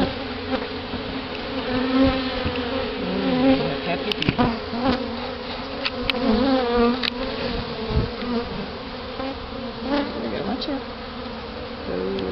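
Honeybees buzzing at an open, newly hived colony: a continuous hum whose pitch wavers and shifts as bees fly around. A few short knocks around the middle as the wooden hive lid is set on.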